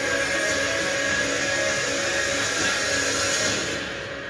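Film trailer soundtrack: music under a dense, steady rushing sound, fading down near the end.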